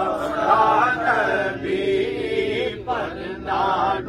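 Male voice singing a devotional kalam in a long, winding melody, holding notes and sliding between them, with a brief break about three seconds in.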